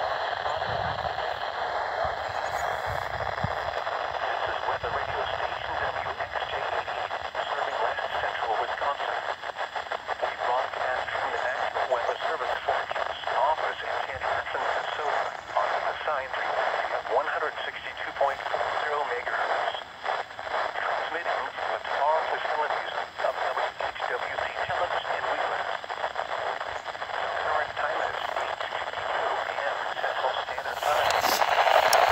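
Midland weather radio receiving a weak, distant NOAA Weather Radio broadcast: a faint announcer's voice buried in steady static hiss, thin and tinny through the small speaker.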